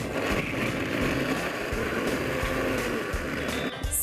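Small electric blender running for nearly four seconds, grinding dried apricots, nuts and honey into a paste, then cut off just before the end.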